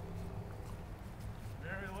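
Low, steady background noise with a faint hum and no distinct events; a man starts speaking near the end.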